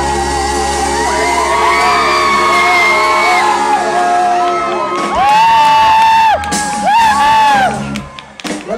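Live pop band with a male vocalist singing, ending on two long held notes over a sustained band chord; the music stops right at the end.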